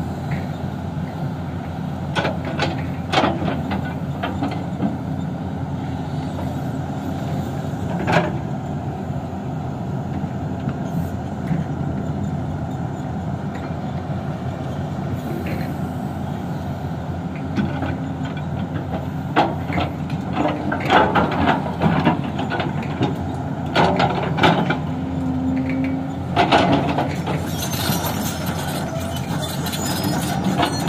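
Hyundai 225 LC crawler excavator's diesel engine running steadily under digging load, with scattered knocks and clatters as the steel bucket scrapes and scoops soil and stones, most of them in the second half.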